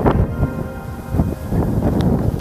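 Wind buffeting the camera microphone in irregular low gusts, with music faint beneath it.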